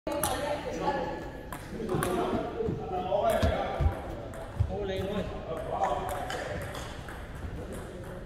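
Table tennis balls clicking off bats and tables at several tables, irregular sharp ticks ringing in a large hall, over people's voices.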